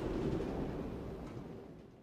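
The tail of a deep rumbling boom from a logo sound effect, dying away steadily and fading out near the end.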